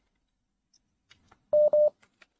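Near silence, then two short electronic beeps at one steady pitch in quick succession near the end.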